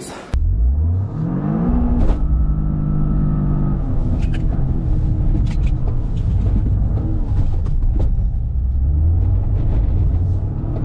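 Car engine heard from inside the cabin under acceleration. Its pitch rises over the first two seconds, then breaks sharply and holds steady, with a heavy low rumble of engine and road running on.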